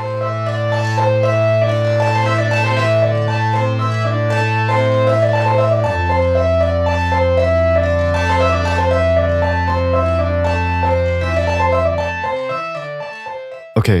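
Eurorack modular synth music: a filtered sawtooth bass voice from an Electrosmith patch.Init() module running a Pure Data patch holds a low A, switches down to F about six seconds in, then fades out near the end. Over it runs a steady rhythm of quick plucked higher notes.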